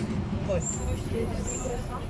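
Steady low rumble of street traffic, with two short high-pitched beeps about a second apart.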